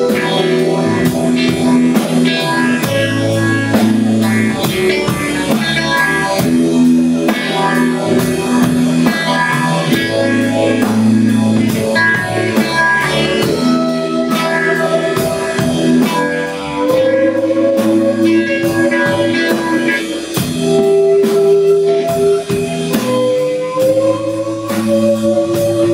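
Live blues-rock band playing an instrumental passage: electric guitar, bass guitar, keyboards and a drum kit keeping a steady beat. Held notes slide up in pitch about two-thirds of the way through and again near the end.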